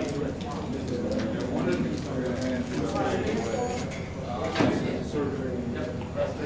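Indistinct chatter of several people in a room, with a few light clicks.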